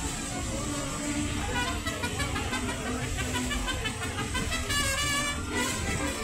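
Engine of a trolley-style tour bus running with a steady low rumble, music playing over it.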